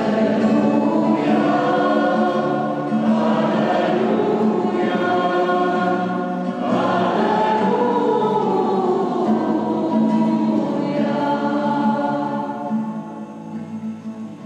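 Two girls singing the responsorial psalm together at Mass over a steady, sustained instrumental accompaniment, the singing easing off near the end.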